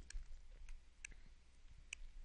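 Several faint, scattered clicks of a stylus tapping on a tablet screen while writing.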